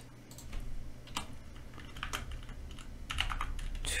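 Computer keyboard being typed on: an irregular run of single key clicks, about eight or nine over a few seconds.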